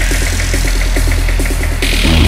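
Techno from a DJ mix: a heavy, steady bass under a fast repeating pattern of short synth notes, with a bright high layer coming back in near the end.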